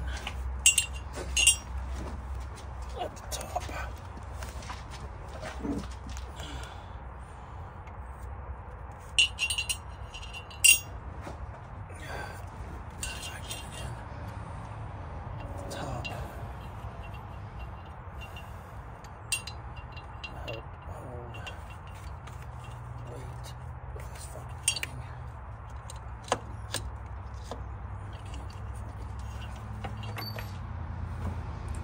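Metal hand tools and hardware clinking against metal under a car's engine bay during repair work: scattered sharp, ringing clinks, a few in quick clusters, over a steady low hum.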